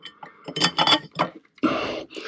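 Light metallic clinks of bolts knocking against a round aluminium plate as it is handled and fitted into place, several in quick succession, followed by a brief hiss near the end.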